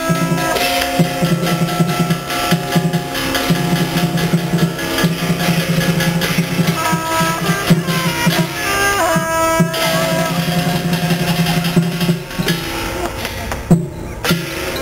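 Live Chinese ritual music: a shrill double-reed shawm (suona) plays a melody over drums and clashing percussion strikes.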